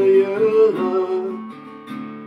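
A man singing along with his own strummed acoustic guitar in a country song. He holds one sung note for about the first second, then the strummed guitar carries on more softly.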